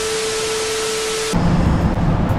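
TV static transition sound effect: a loud burst of white-noise hiss with a steady tone through it, lasting about a second and a half and cutting off suddenly. A low hum follows near the end.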